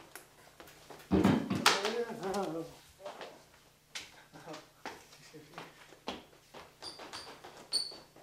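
A person's wordless, drawn-out vocal exclamation about a second in, followed by scattered light clicks and knocks, with a few short high squeaks near the end.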